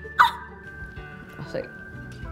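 A woman's short, high-pitched squeak of excitement just after the start, over background music with a held note; a brief spoken word follows.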